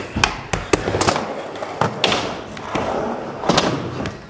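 Skateboard rolling on skatepark ramps and floor, with a string of sharp clacks and thuds from the board striking the surface.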